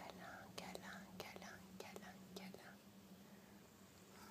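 Faint whispering with a few soft mouth clicks during the first couple of seconds, then near silence over a faint steady hum.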